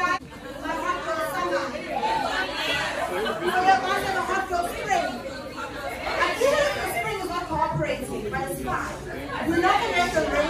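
Speech: a woman talking into a handheld microphone in a large room, with chatter.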